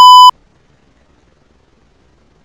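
A loud, steady test-tone beep of the kind played with TV colour bars, cutting off abruptly about a third of a second in; after it, only faint room noise.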